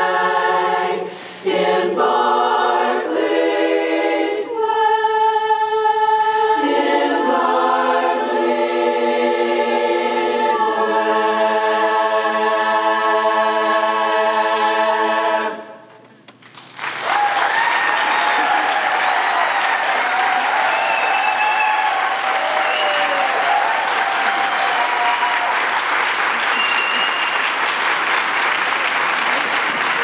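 Women's a cappella chorus singing the close of a song, ending on a long held chord of about five seconds that cuts off cleanly. After a moment's pause, the audience bursts into applause and cheering that continues to the end.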